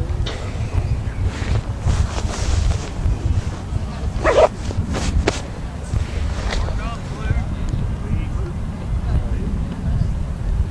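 Wind rumbling on the microphone, with distant shouting from players on the field and one short, loud call about four seconds in.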